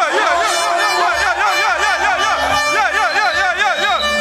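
Dancehall deejay chanting into a microphone through the club PA in quick, rhythmic rising-and-falling phrases, over a bass-heavy backing track.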